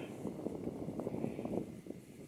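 Quiet outdoor ambience from a canoe on a lake: a light wind haze with faint, irregular small knocks and rustle.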